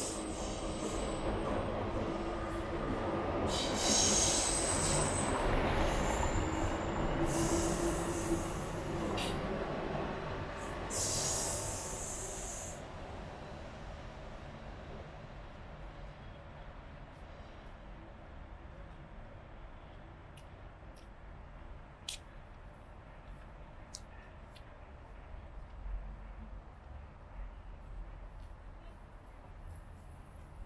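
A train running past on steel rails, with high-pitched wheel squeals coming several times, loudest over the first dozen seconds and then fading away. After it, only faint background sounds and a few sharp clicks remain.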